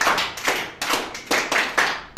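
Applause: hands clapping in sharp, uneven claps, about four a second.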